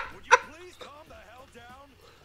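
A man laughing: one loud burst just after the start, then trailing off into quieter, high-pitched, wavering laughter.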